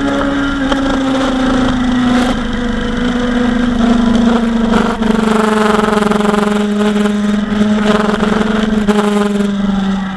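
Kawasaki Ninja 1000's inline-four engine running steadily at highway cruising speed. Its pitch steps down slightly about two seconds in and the sound dips briefly about five seconds in, then it holds steady.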